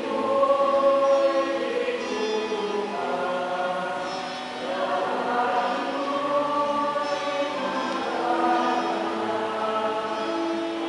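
Church choir singing a slow hymn in long, held notes.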